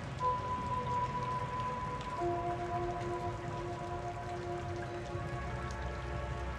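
Ambient background music of long held notes: a high note enters just after the start, and two lower notes join about two seconds in. Underneath runs a steady rain-like patter.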